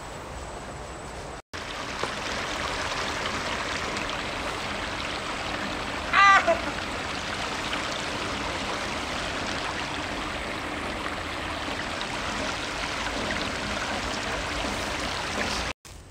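Shallow river running over rocks: a steady rush of water, louder after a short cut a second and a half in. About six seconds in, one brief loud shout from a person.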